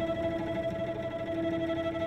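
Live chamber music: cello and piano holding long, steady sustained notes in a reverberant hall.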